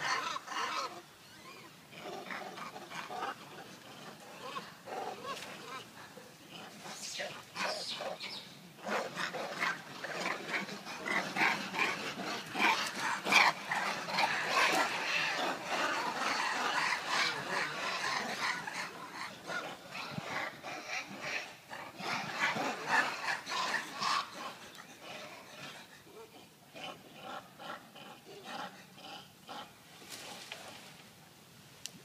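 A troop of rhesus macaques calling, many short harsh calls overlapping. The calls start scattered, build to a dense, loud stretch through the middle, and thin out near the end. This is agitated calling of the kind heard when two troops appear to be in conflict.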